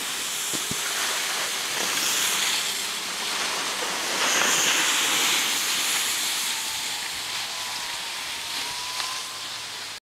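Steady hiss of snowboards sliding and scraping over packed snow, swelling about four seconds in and easing toward the end, mixed with wind rushing over the microphone.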